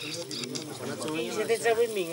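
People talking: voices of several speakers conversing.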